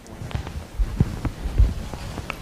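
Irregular low thuds and knocks as people move about on the stage, the heaviest thud about one and a half seconds in.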